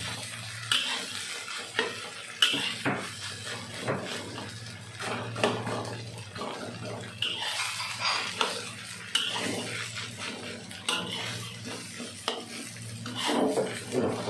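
Metal spatula scraping and clanking against a steel wok while stir-frying rice, with irregular strikes about once a second over a light frying sizzle.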